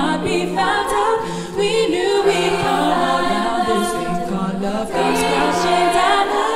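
An a cappella choir singing: a steady low sung bass note and held chords under a lead voice that wavers through runs, with no clear words.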